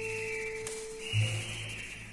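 Background music: slow, held melody notes over a low bass note that swells about a second in.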